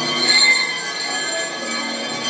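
A dense mix of simultaneous live performances, topped by high squealing, ringing tones and a short wavering tone about half a second in.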